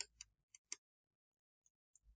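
Faint clicks of a stylus tapping a writing tablet as words are handwritten: four in the first second, then two fainter ones near the end.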